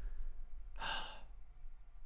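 A man's single breathy sigh, a short exhale about a second in, over a faint steady low hum.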